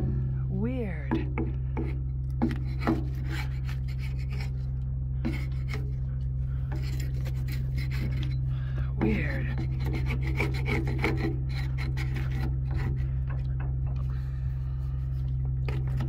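A hand paint scraper scraping stripper-softened paint off an aluminum boat's metal surface in repeated, irregular strokes, the blade dull enough to need sharpening. A steady low hum runs underneath.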